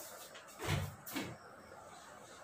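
Two short knocks about half a second apart, from a whiteboard eraser being handled against the whiteboard as wiping begins.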